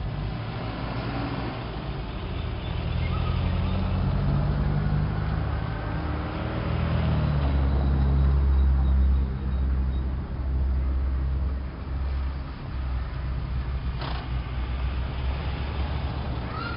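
Low, steady engine drone of a motor vehicle, growing louder toward the middle and easing after about ten seconds, with a single sharp click near the end.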